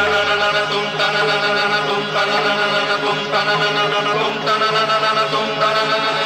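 Devotional chant sung in long held notes over instrumental music, the notes changing about once a second.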